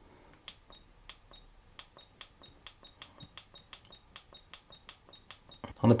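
XTU S6 action camera beeping from its built-in speaker as its menu buttons are pressed: a dozen or so short high beeps, each with a small button click, coming about two to three a second.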